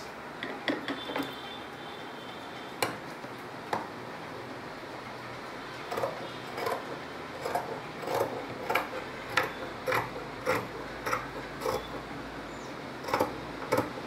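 Scissors snipping through folded cloth along a chalk line, a steady run of short cuts about two a second that starts about six seconds in. Before that, only a few light clicks and taps.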